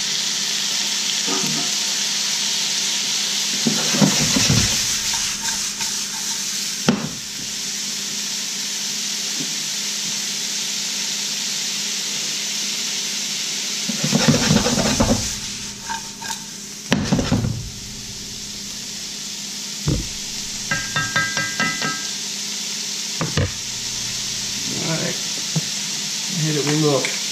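Raw shrimp, peppers, shallots and tasso sizzling steadily in a hot skillet. The pan is shaken and stirred a few seconds in and again past the middle, bringing louder rattling bursts of food moving in the pan.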